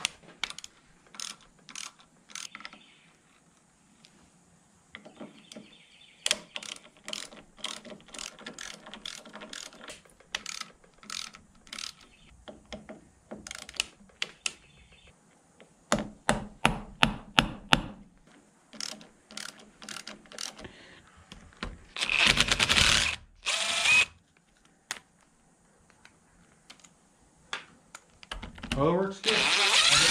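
Hand ratchet clicking in short runs while backing out screws on a Cummins VGT turbo actuator housing. A cordless drill-driver then runs in two short bursts about three quarters of the way through, and spins up again, rising in pitch, near the end.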